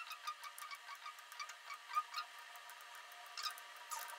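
Faint, irregular small clicks and taps of multimeter test-probe tips touching the terminals of lithium-ion cells in a hybrid battery pack.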